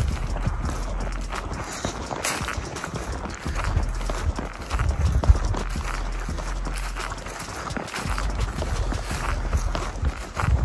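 Footsteps of a person walking through a grassy field, an uneven run of low thuds and swishes.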